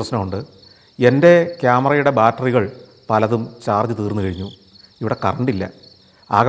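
Crickets trilling steadily at a high pitch behind a man talking.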